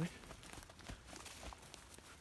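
Faint, irregular footsteps of a runner on damp forest floor and leaf litter, with rustling.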